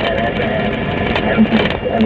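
A voice in a background song, in rhythmic phrases with held notes, over steady vehicle noise.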